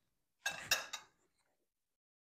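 Metal spoons set down against a ceramic soup bowl: two quick clinks about a quarter second apart, the second louder.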